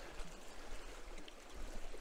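Sea washing on a rocky shore: a faint, steady hiss of water with no distinct wave breaks.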